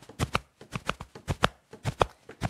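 Body percussion: a hand slapping the chest in a quick, uneven rhythm of about nine strikes.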